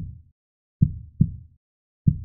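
Heartbeat sound: a low double thump, lub-dub, repeating slowly about every second and a quarter.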